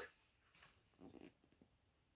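Near silence: room tone, with faint brief handling noise about a second in as a hardback picture book is lifted and opened to show a page.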